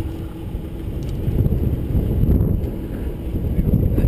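Wind buffeting the microphone over the steady low rumble of a sportfishing boat at sea.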